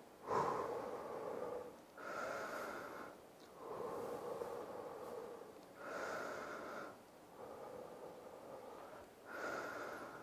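A man breathing quietly and steadily as he recovers from a set of push-ups: slow breaths in and out, each lasting about one to two seconds, about three full breaths in all.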